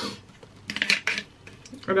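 A few light clicks and knocks of a solid conditioner bar being handled in a hard plastic soap dish, bunched about halfway through.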